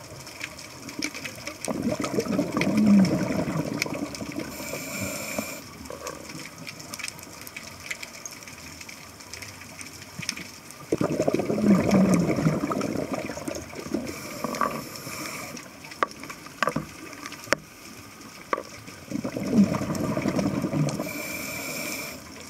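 Scuba diver breathing through a regulator underwater: three bubbling exhalations about eight seconds apart, each followed by a short hiss of inhalation, with faint scattered clicks in between.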